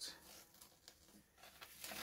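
Near silence, with faint small crackles of masking tape being lifted off a painting.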